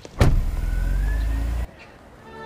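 Sports car engine starting with a sharp click and running with a loud, deep, steady rumble, which cuts off abruptly near the end.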